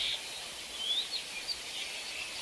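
Faint bird chirps, a few short rising calls, over a steady outdoor background hiss.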